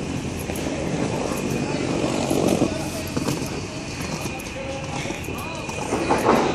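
Indistinct voices of nearby passers-by over steady outdoor background noise, loudest about two seconds in.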